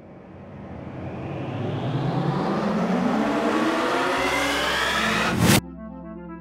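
A swelling whoosh sound effect: rushing noise that grows louder while its pitch climbs steadily for about five seconds, ending in a short, loud burst that cuts off suddenly. Soft, gently pulsing music follows in the last half-second.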